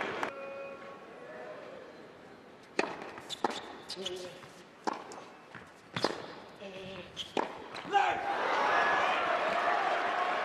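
Tennis ball struck back and forth in a rally, a handful of sharp racquet hits roughly a second apart, followed near the end by an arena crowd cheering and shouting as the point is won.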